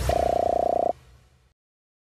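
End-card sound effects: a short whoosh ending in a low thump, then a buzzing tone held for nearly a second that cuts off abruptly, leaving a brief fading tail.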